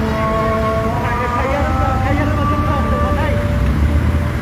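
Steady low rumble of vehicle engines in slow-moving highway traffic, with people's voices calling out over it.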